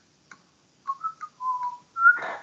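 A person whistling a few short notes, starting about a second in, with one note held a little longer.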